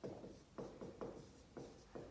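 Marker writing on a whiteboard: a quick run of short scratchy strokes, about four or five a second.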